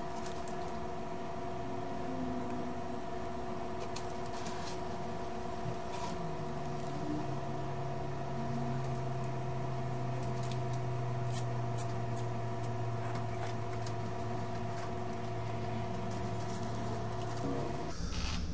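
A steady hum of several even tones, joined about six seconds in by a lower tone that settles after a slight downward slide. A few faint light clicks of metal tools on the circuit board are scattered through it.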